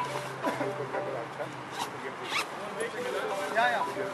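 Distant voices of cricket players calling across an outdoor field. About two seconds in come two short, sharp noises half a second apart, and shortly before the end there is one brief rising-and-falling call.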